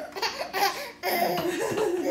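A baby laughing: a short burst of giggles, then a louder, longer peal of laughter from about a second in.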